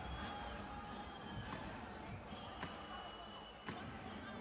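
Arena crowd noise with fans' drums pounding a slow beat, one thump about every second.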